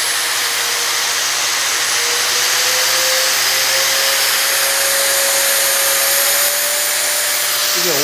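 Bosch GWX 125 S 5-inch variable-speed angle grinder running free with no load at its fourth speed setting. It makes a steady whirring hiss with a whine that rises slightly in pitch through the middle.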